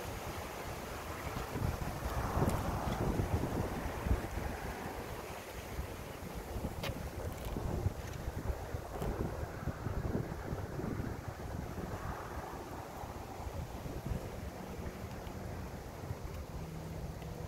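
Wind buffeting the microphone: a low, rumbling rush that swells in gusts a couple of seconds in and again around ten seconds.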